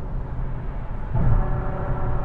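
Steady road rumble of a car cruising at highway speed, heard from inside the cabin. A little over a second in, a low thump comes and a steady hum of several even tones joins the rumble.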